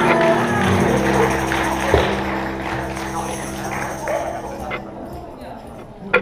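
A live band's instruments holding sustained notes, with one hit about two seconds in, dying away over the last couple of seconds, with voices in the room.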